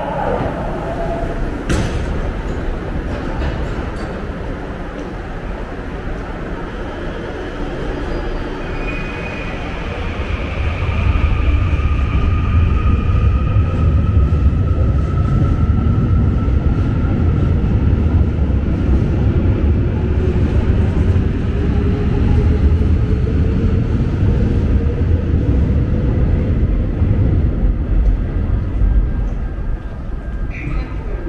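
Commuter electric train of the Gyeongui–Jungang Line running on the rails, heard inside the car: a steady rumble that grows louder about ten seconds in, with thin whining tones above it and later a tone that slowly rises in pitch.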